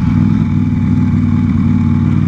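Sport motorcycle's engine running steadily at low road speed, its pitch holding even.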